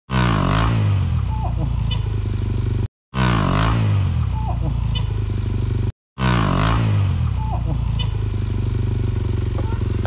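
Enduro dirt bike engine revving hard on a steep bank climb. Its pitch drops at first and then holds at a steady high drone. The same few seconds play three times, broken by brief silences.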